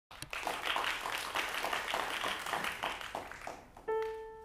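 Audience applause, many hands clapping, that dies away over about three seconds. Just before the end a single piano note is struck and left ringing, the A given for the violin to tune.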